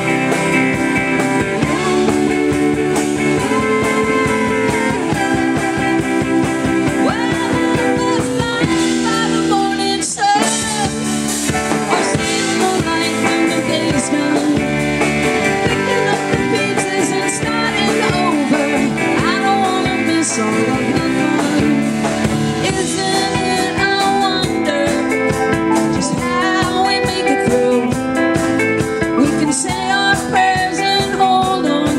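Live band playing a song on guitars, bass guitar, drums and keyboard, the low end thinning briefly about nine seconds in.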